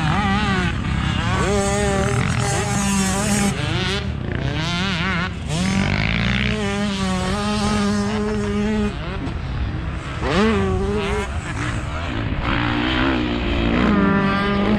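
Motocross bike engines revving on a dirt track, the pitch repeatedly climbing, holding and dropping off as the throttle is worked.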